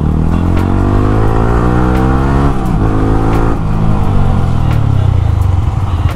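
Yamaha R15 sport bike's single-cylinder engine and exhaust under way, the pitch rising as it accelerates, dipping briefly at a gear change about two and a half seconds in, then rising again and easing to a steadier, slightly falling note in the second half.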